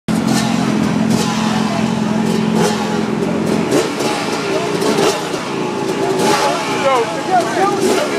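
KTM 300 two-stroke dirt bike engine running steadily at low revs, stopping about halfway through, with a crowd talking and shouting over it and after it.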